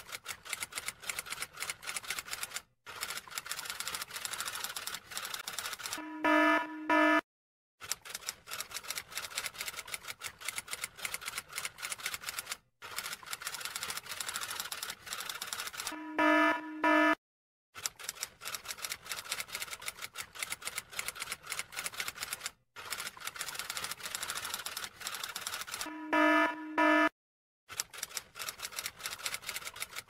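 Typewriter sound effect: rapid key clacks, broken about every ten seconds by a short pitched ding and a brief silence. The same sequence repeats as a loop.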